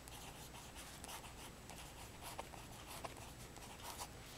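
Pen tip scratching faintly across card stock as handwriting goes on, in a series of short strokes.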